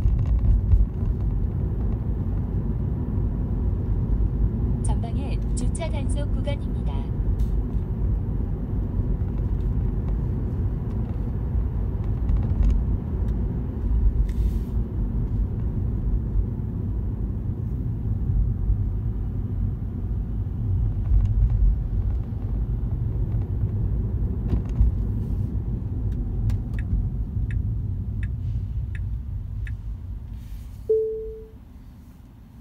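Steady low road and tyre rumble heard inside the cabin of a moving Tesla, an electric car with no engine note, with a brief cluster of light clicks about five to seven seconds in. The rumble eases toward the end as the car slows in traffic.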